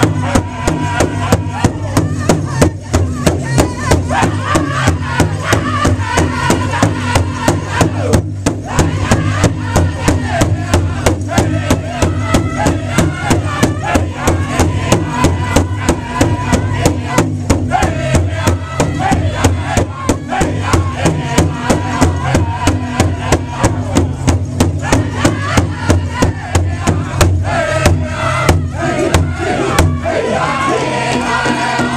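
Powwow drum group: several men singing together while striking a large shared drum in unison with drumsticks, a steady beat of a little over two strokes a second.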